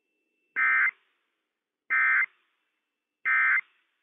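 EAS SAME end-of-message data bursts on NOAA Weather Radio: three short, identical warbling bursts of two-tone digital data, about a second and a half apart. They mark the end of the Required Weekly Test message.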